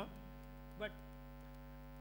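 Steady electrical mains hum, with one short spoken word a little under a second in.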